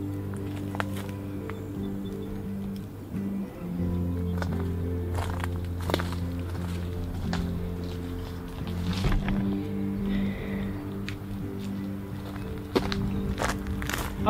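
Background music of long held low notes that change every few seconds, with a few faint sharp knocks and footsteps underneath.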